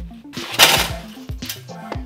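A large block of ice sliding out of an upturned plastic cooler onto a stainless drip tray: a noisy rush lasting about half a second, starting about a third of a second in, then a sharp click, over background music.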